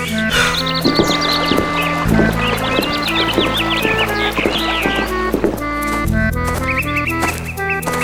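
Light cartoon background music: a simple melody in held notes over a steady beat, with bursts of high bird-like chirps near the start, in the middle and near the end.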